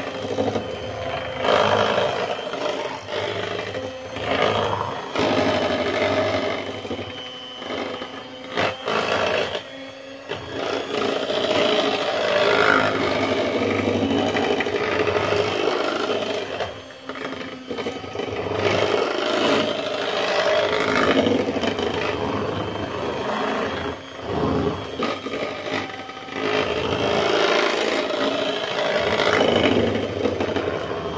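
Electric hand mixer running, its beaters whipping butter, sugar and egg white into buttercream in a stainless steel bowl. The sound swells and dips as the beaters move through the mixture, with a few brief drops.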